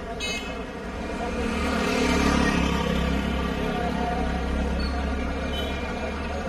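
Street traffic: a motor vehicle's low rumble swells about a second and a half in and eases off near the end, over a steady hum, with a brief high-pitched beep just after the start.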